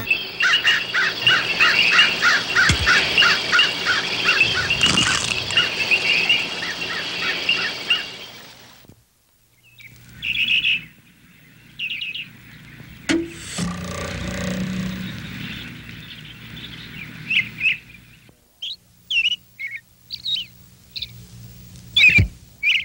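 Birds chirping and singing: a dense run of repeated chirps for about eight seconds, a brief drop-out, then scattered single chirps, with one sharp snap about thirteen seconds in.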